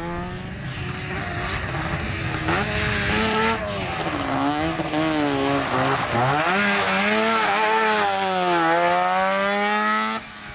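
Trabant 601 rally car's two-stroke twin-cylinder engine revving hard, its pitch rising and falling repeatedly with throttle lifts and gear changes and dropping sharply about six seconds in before climbing again. The engine runs over a noisy hiss of tyres scrabbling on loose gravel.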